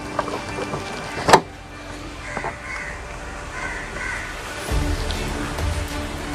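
A single sharp metallic click about a second in, from a ratchet wrench on a scooter's clutch-cover bolt, over background music. A low rumble comes in near the end.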